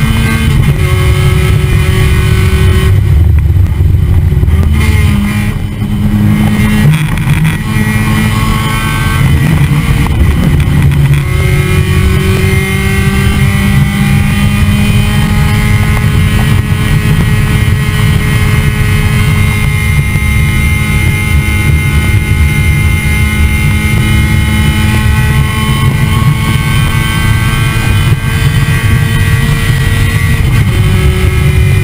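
Spec Miata race car's inline four-cylinder engine running hard at racing speed, its note briefly changing with a small dip in loudness about four to six seconds in. Heavy wind noise rushes over a camera mounted low on the outside of the car.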